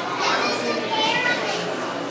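Children's voices, talking and calling out in high, rising and falling tones, over the general chatter of people around them.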